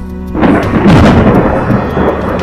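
A loud thunderclap breaks in about half a second in and rumbles on.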